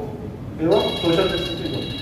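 A telephone ringing with an electronic ring: a high, steady ringing tone that starts a little under a second in and carries on past the end.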